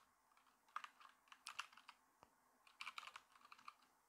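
Faint typing on a computer keyboard: two short runs of keystrokes.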